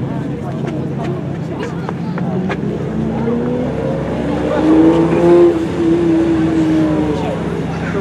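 Ferrari 512 TR's flat-12 engine driven on track. Its note climbs in pitch from about three seconds in and is loudest around five seconds as the car comes past, then eases a little as it corners away.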